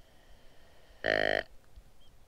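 Deer grunt call blown once: a short grunt about a second in, used to try to call a deer in.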